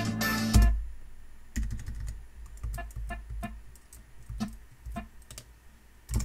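An instrumental music track plays back with a beat and stops abruptly less than a second in. After that come about a dozen irregular computer keyboard key clicks.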